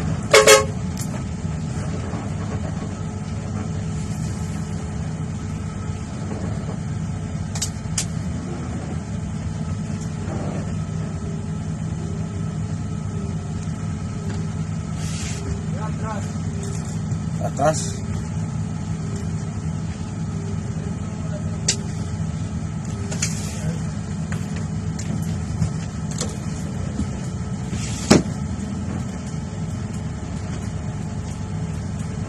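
Diesel engine of a Philtranco bus idling steadily as it creeps up to the fuel tank, with a short horn toot about half a second in and a few sharp clicks later on.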